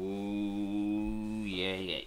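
A man's voice holding one long low note, steady for about a second and a half, then wavering and breaking up near the end.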